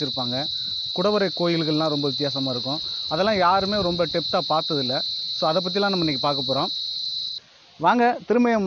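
Insects droning in a steady, high-pitched chorus under a man's talking; the drone cuts off abruptly near the end.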